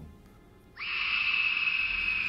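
A high, drawn-out, scream-like shriek, laid in as a sound effect, starts suddenly about three-quarters of a second in and holds with a slowly falling pitch.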